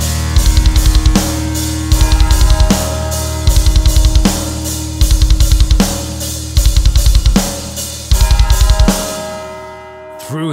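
Heavy metal band playing an instrumental passage: sustained chords over a drum kit, with short rolls of fast double bass drum about every second and a half and cymbal crashes. The music fades out near the end.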